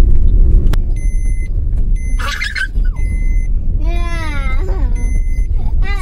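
Low, steady rumble of a car driving, heard from inside the cabin. From about a second in, a high electronic beep sounds for about half a second roughly once a second.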